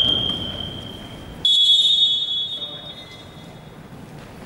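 Referee's whistle blown in two long blasts, the second slightly higher in pitch and fading out a little past the middle, signalling a stoppage in play in a basketball gym.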